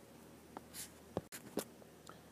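Faint, brief scratches and taps of a stylus on a tablet, four or five short strokes and a click within two seconds, over quiet room tone.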